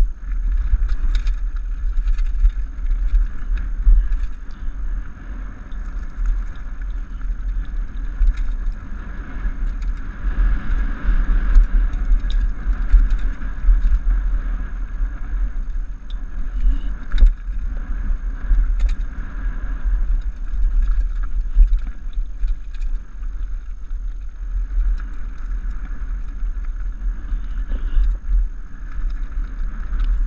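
Mountain bike ridden down a rocky gravel trail, heard through a helmet-mounted camera: a steady heavy rumble of wind and vibration on the microphone, with tyres on loose stone and the bike rattling, and scattered sharp clicks and knocks.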